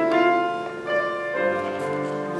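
Piano accompaniment playing the introduction to a slow sacred solo song, with notes ringing out and overlapping; the singer has not yet come in.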